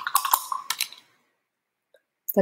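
A paintbrush and a round plastic paint palette being handled for mixing acrylic paint: a quick run of light clicks and taps that stops about a second in.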